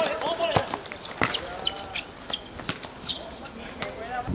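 A football being kicked and bouncing on a hard outdoor court: a string of sharp thuds, the loudest about half a second and a second in. Players shout over it.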